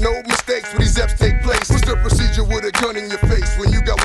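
Hip-hop music with rapping over a heavy bass beat.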